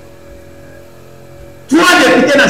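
A steady low electrical hum in a quiet gap, then a man's voice starts loudly near the end.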